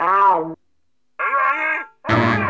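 A cartoon cat's wordless yell into a telephone handset, falling in pitch and lasting about half a second. After a short silence, a second brief vocal call follows that sounds thin and narrow, like a voice heard through the phone.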